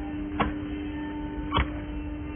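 A steady low electrical hum, with two short sharp knocks as the recliner is handled during assembly: one about half a second in, the other about a second later.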